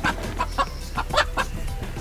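Chickens clucking: a string of short, separate clucks.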